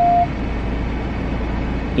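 Low, steady rumble of a car's engine and cabin, heard from inside the car, with a steady single-pitched tone that cuts off just after the start.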